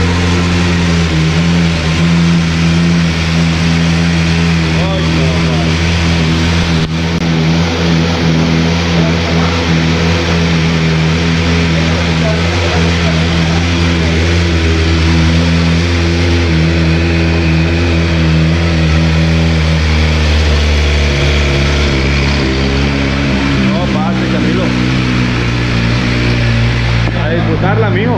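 BMW M1000 RR's 999 cc inline four-cylinder engine idling steadily, its tone even, with no revving.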